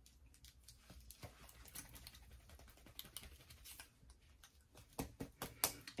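Faint, irregular light clicks and taps of long acrylic nails on a gel polish bottle as it is handled to mix the separated colour, with a few sharper clicks near the end.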